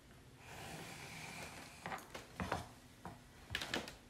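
Pencil drawn along a ruler on construction paper: a faint scratching stroke lasting about a second and a half, then several light knocks and taps as the wooden ruler is shifted and set down on the cutting mat.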